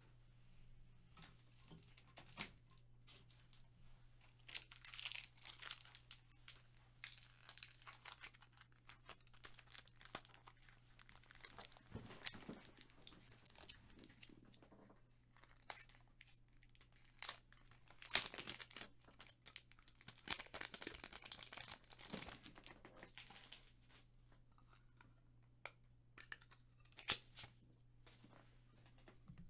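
Trading-card pack wrappers being torn open and crinkled by hand, in irregular bursts of rustling with sharp clicks, over a steady low hum.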